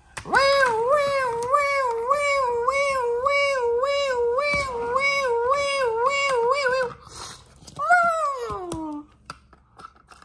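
A toy ambulance's electronic siren warbles steadily up and down, about twice a second, and cuts off about seven seconds in. About a second later comes a single falling wail.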